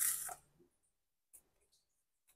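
Mostly near silence while hands squeeze and shape soft rice-flour dough: a brief soft hiss right at the start, then one faint tick.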